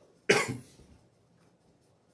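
A man coughs once into his fist: a single short, loud cough about a third of a second in.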